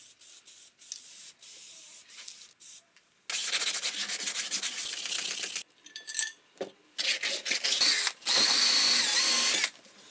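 Abrasive sanding on a steel motorcycle exhaust muffler: stretches of loud, even rubbing noise broken by sudden cuts. A thin steady whine joins the last stretch near the end.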